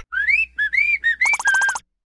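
A cartoon character whistling a short, jaunty tune of several separate rising, gliding notes. The tune ends in a held note with a fast fluttering warble.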